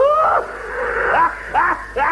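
A person's voice making drawn-out, breathy non-word cries, part of a long run of repeated 'ae, ae' exclamations, with a hoarse, breathy stretch in the middle.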